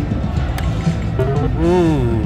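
Casino floor sound: a steady low din with background music, and a short pitched sound that rises and falls about a second and a half in.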